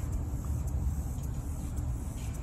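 Low, steady outdoor rumble with no distinct events.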